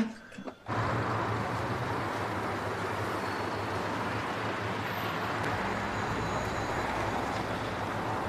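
Street traffic noise: a steady hiss of passing cars with a low engine hum, starting about a second in. A deeper rumble joins about two-thirds of the way through.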